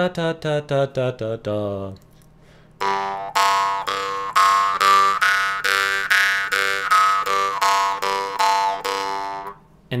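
Jaw harp (khomus) tuned to G, plucked about three times a second over its steady drone. The overtone melody moves up and down as the mouth and throat shape the resonance: a scale played by alternating open and throat-closed positions.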